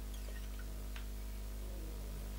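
Steady low electrical hum under quiet room tone, with a faint single tick about a second in.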